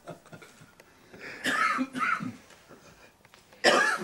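A person coughing a few times in short bursts, the loudest near the end.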